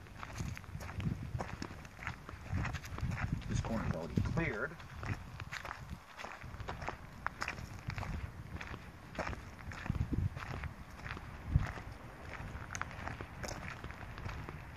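Footsteps walking on a gravel road and dry leaf litter, in an uneven run of steps, with one louder thump near the end.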